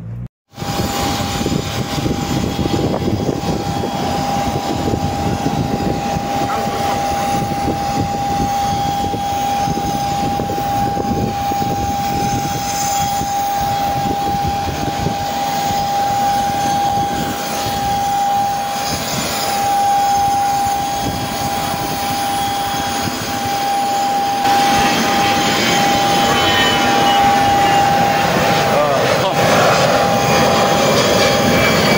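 Jet aircraft engine running, a steady high whine over a rushing noise; the rush grows louder in the last few seconds.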